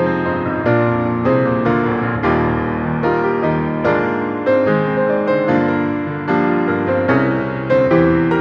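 Grand piano played solo: a flowing pop-ballad arrangement, chords and melody notes struck in an even pulse and left to ring into one another.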